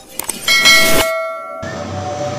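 Sound effects of a video intro's subscribe animation: a few quick clicks, then a loud, bright chime with several ringing tones over a hiss. One ringing tone fades out, and about a second and a half in the sound cuts to a steady background hum.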